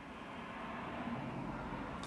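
Road traffic heard from inside a car cabin: a car driving past on the street, growing slowly louder through the pause.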